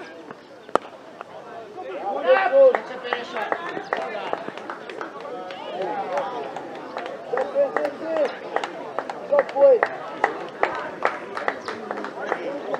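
A cricket bat striking the ball with one sharp crack under a second in. Then players' voices shout and call across the field, with scattered sharp clicks.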